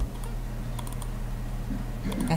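A few scattered keystrokes on a computer keyboard, faint and irregular, over a steady low hum.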